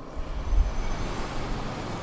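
Steady rushing noise with a deep rumble, strongest about half a second to a second in, like road traffic going by.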